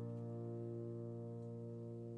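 A held chord from the song's instrumental accompaniment, ringing on and slowly fading in a gap between sung lines of a slow ballad.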